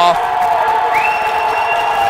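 Hockey arena crowd shouting and yelling in a sustained, steady roar. A long, high, steady whistle starts about a second in and holds to the end.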